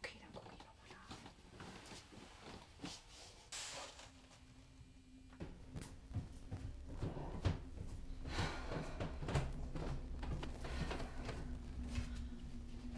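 Soft knocks and shuffling, heaviest in the second half, over a low steady hum that starts about five seconds in.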